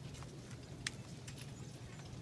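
A few light clicks of a display peg being fitted into a pegboard, the sharpest a little under a second in, over a low steady hum.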